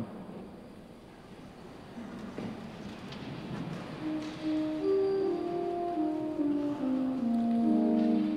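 Quiet church room tone, then about four seconds in, soft organ music begins: slow, held notes stepping from one chord to the next and swelling gradually.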